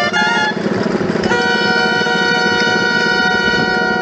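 Dulzainas (Riojan gaitas) playing: a few quick notes, then from about a second in one long held note, reedy and horn-like, with a drum beneath.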